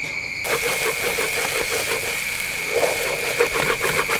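Curry paste sizzling in a hot steel wok as a wooden spatula stirs and scrapes it around the pan, the paste caramelising with palm sugar and fish sauce. The sizzle comes in suddenly about half a second in and then holds steady.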